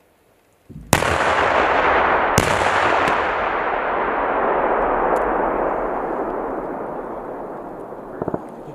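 Bangalore torpedo breaching charge detonating in a wire obstacle: one sharp blast about a second in, a second crack a moment later, then a long rumble that slowly fades. It is the sound of the charge blowing a lane through the concertina wire.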